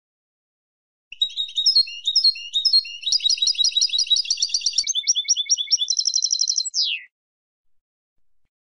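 A female European goldfinch twittering: a run of rapid high chirps and trills that starts about a second in and ends with one falling note about seven seconds in.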